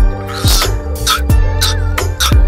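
Music with a heavy beat and deep bass hits, over which a French bulldog puppy makes short whining vocal sounds.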